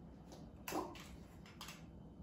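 Mandarin orange segments being pulled apart by hand and dropped into a glass of water: two faint, short wet sounds, one less than a second in and a softer one near the end.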